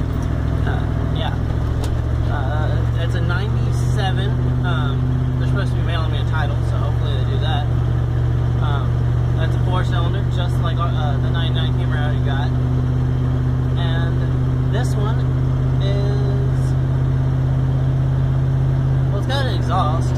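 Steady low engine and road drone inside a moving vehicle's cabin, its pitch shifting slightly about six seconds in and again near the end.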